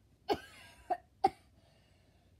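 A person coughing and hacking, three short coughs in the first second and a half.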